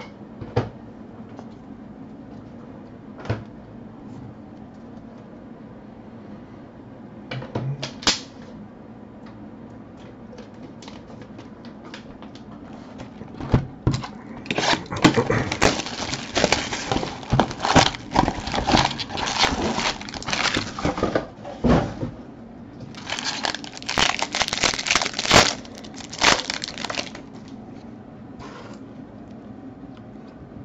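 Cellophane shrink wrap being torn and crumpled off a sealed trading-card box: two long stretches of crackling, crinkling plastic in the second half, after a quiet start with a few light knocks.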